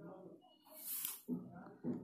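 A woman's faint, wordless voice sounds, with a short breathy hiss about halfway through.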